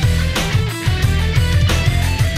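Heavy, hardcore-style rock remix with programmed drums under guitar and synthesizers. Low kick hits that drop in pitch drive a fast beat of about four a second.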